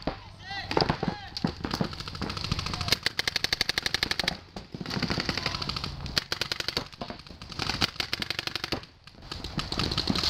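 Paintball markers firing rapid strings of shots, the fastest and most even run lasting over a second from about three seconds in, with more strings throughout.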